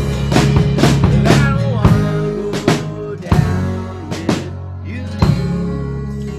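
A rock band playing live, unplugged: strummed acoustic guitars, bass and drum kit, with drum hits about twice a second. The playing thins out after about three seconds, and one last accented hit about five seconds in leaves a chord ringing.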